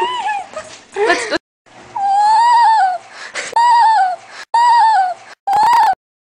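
A dog whining in high, drawn-out whines, four of them, each rising and then falling in pitch. The sound cuts off abruptly near the end.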